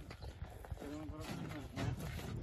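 Plastic grape crates knocking and clattering irregularly as they are handed up and stacked on a truck bed, with people's voices talking.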